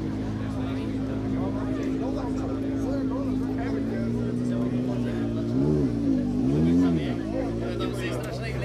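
A car engine idling steadily, then revved twice in quick succession a little past halfway, each blip rising and falling in pitch.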